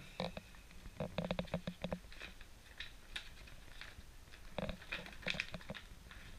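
Paper instruction leaflet being unfolded and handled, crinkling in two spells, about a second in and again near the end.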